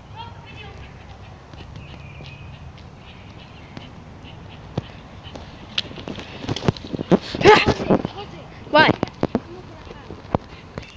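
Footsteps crunching through dry leaves and pine straw, starting about halfway through, with a voice calling out twice near the end. Faint bird chirps in the first few seconds.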